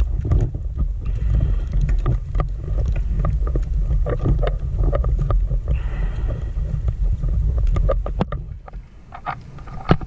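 Underwater noise on a scuba dive: a loud low rumble that drops away about eight seconds in, with scattered clicks and knocks.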